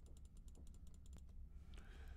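Faint, rapid clicking of a computer mouse, several clicks a second, as spline points are picked one after another; the clicks stop a little over halfway through.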